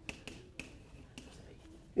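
Chalk writing on a blackboard: several sharp, irregular taps and clicks of the chalk stick striking the slate as a formula is written.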